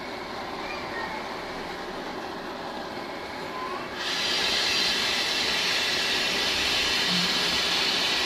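Gas oven burner running with a steady hiss, which gets louder and brighter about four seconds in.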